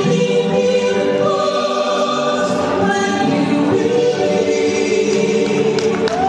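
A mixed vocal quartet of two men and two women singing a Christian worship song in harmony into microphones, with long held notes.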